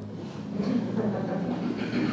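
Low steady background rumble with a faint murmur of a man's voice.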